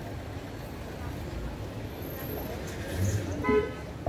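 Street traffic noise with a single short vehicle horn toot about three and a half seconds in.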